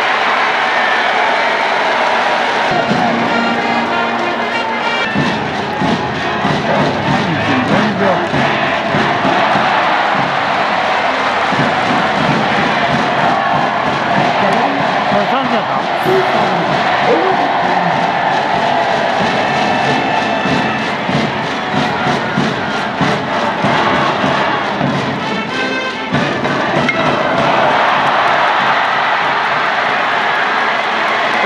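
Stadium crowd at a baseball game: band music and cheering from the stands, loud and steady, with a mix of voices.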